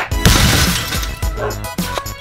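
Glass shattering once, about a quarter second in, as a CRT television's glass picture tube is broken, over background music with a steady beat.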